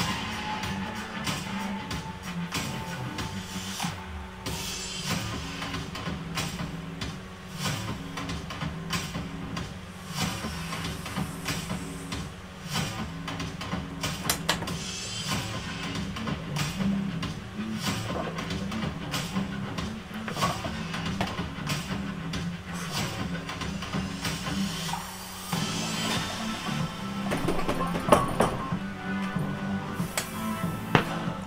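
Background music with a steady beat. Near the end a sharp knock stands out: the loaded barbell being set back on the rack.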